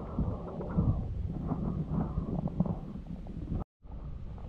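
Wind buffeting an action camera's microphone: an irregular low rumble that cuts out abruptly for a moment near the end.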